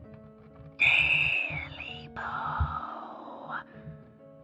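A hissing, breathy creature voice calls out twice, each call falling in pitch, over a low droning horror music bed.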